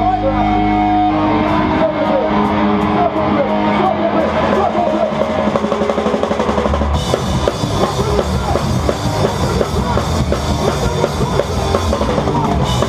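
Hardcore band playing live, heard from right behind the drum kit. A held, ringing guitar chord fills the first second, then the drums come in, and about seven seconds in the cymbals crash in with the full band.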